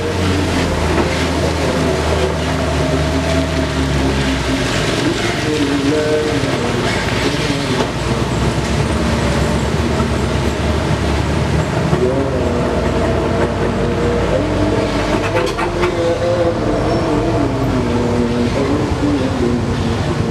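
Heavy diesel truck engines labouring under load as loaded trucks crawl through deep mud ruts, a steady low drone whose pitch shifts up and down with the throttle.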